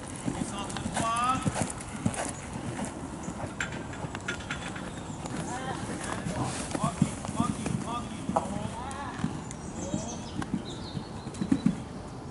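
Hoofbeats of a horse cantering over a sand arena's footing, a run of dull thuds.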